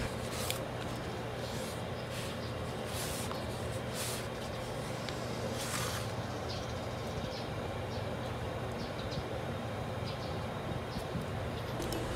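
Quiet, steady background hum and hiss, with a few brief faint rustles and clicks in the first half as hands press and handle a smartphone.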